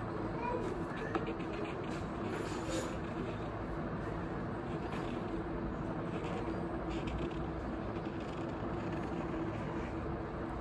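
Steady low room hum, with a few faint taps and scratches of a Posca paint marker being dabbed and drawn on paper.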